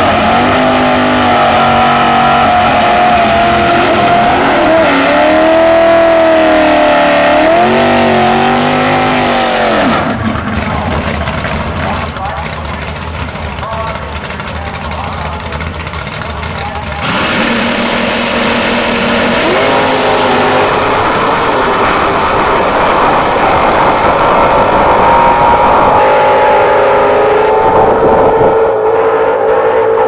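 Drag-racing Super Stock Camaros' V8 engines, revving up and down at the starting line for the first ten seconds, quieter for a stretch, then at full throttle launching and running away down the strip from about two-thirds in. The sound changes abruptly at edits.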